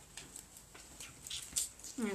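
A few light taps and knocks as craft pieces are set down and moved about on a table.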